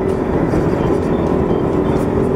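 Motorcycle engine running at a steady cruising speed, with a constant hum and a steady rush of wind and road noise.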